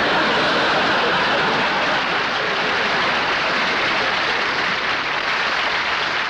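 Studio audience laughing and applauding, a steady dense wash of clapping.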